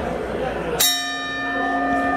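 Boxing ring bell struck once about a second in, ringing on with a clear metallic tone over the murmur of the crowd. It is rung to call the hall to attention before the ring announcer gives the result.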